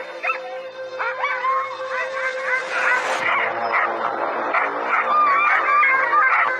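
Several husky-type dogs barking, howling and yipping in wavering calls over a music bed with a steady drone. The dogs are raising an alarm, acting as if some animal is around.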